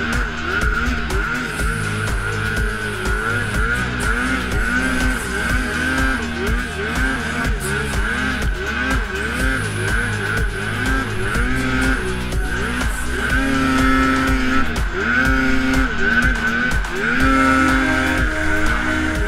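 Arctic Cat M8 snowmobile's 800 cc two-stroke twin engine, its pitch rising and falling over and over as the rider works the throttle through deep powder snow.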